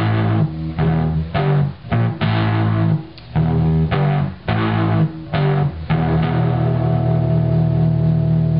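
Electric guitar recording played back with hard-clipping distortion applied, giving it an overdriven sound: a run of short, choppy chords with brief gaps between them, then one chord held and ringing from about six seconds in.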